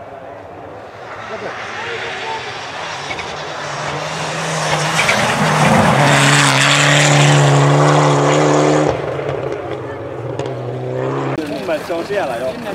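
Mitsubishi Lancer Evolution rally car approaching and passing at speed on a snowy gravel stage. Its turbocharged four-cylinder engine is driven hard, with tyre and road noise, growing louder to a peak between about six and nine seconds. The sound cuts off suddenly there, leaving a fainter engine note.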